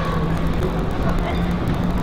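Open-air ambience at a football pitch during play: a steady low hum under even background noise, with no kicks or whistles standing out.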